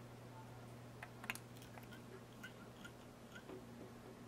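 Faint scattered clicks and ticks of hands handling a clump of elk hair and a thread bobbin at a fly-tying vise, the loudest about a second in, over a steady low hum.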